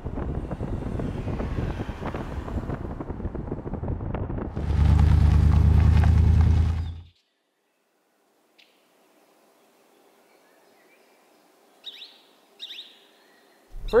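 Kia Stinger GT1's 3.3-litre twin-turbo V6 and road noise while driving, with the engine louder for about two seconds in the middle, then cut off suddenly. After a stretch of silence, faint outdoor quiet with two short bird chirps near the end.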